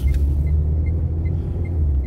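Steady low rumble of a car's engine and tyres heard from inside the moving car's cabin, with a faint tick repeating about two or three times a second.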